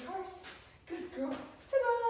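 Dog whining in a series of short, high-pitched whimpers, then a louder, longer held whine starting near the end.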